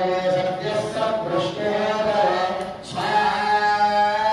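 Male voices chanting Vedic mantras together on long, held pitches, with a short break for breath about three seconds in.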